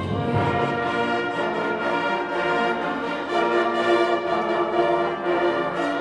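A high school concert band of woodwinds and brass playing a full, sustained passage of held chords, with the brass prominent.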